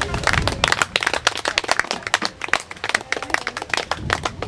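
A small group of people applauding, a dense run of individual hand claps that starts suddenly and goes on throughout.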